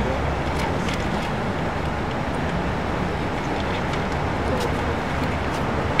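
Steady urban traffic noise: an even, unbroken rumble and hiss with no sudden events.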